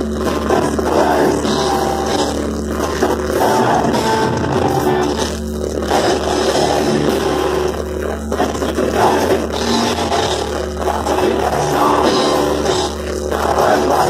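Black metal band playing live: distorted electric guitars and drums in a dense, continuous wall of sound, with a few brief dips.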